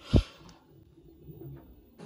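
A single short, loud thump just after the start, the sound of the filming phone being bumped or handled, followed by faint room tone.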